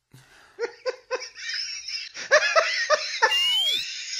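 Bursts of laughter from several people, in rhythmic 'ha-ha' pulses that build up, with a high rising squeal near the end. It is dubbed-in laughter, a laugh track, mocking the reading of the definition.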